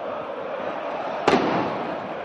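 Steady stadium crowd noise, with a single sharp firecracker bang about a second and a quarter in that rings out briefly.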